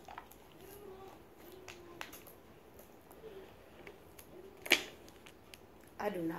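Quiet handling of a plastic water bottle while she drinks from it: scattered small clicks and crinkles, with one sharper knock about five seconds in. Faint murmured voice in the background.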